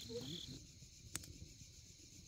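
Crickets chirping steadily and faintly, with a short laugh at the start. One sharp crackle comes from the campfire about a second in.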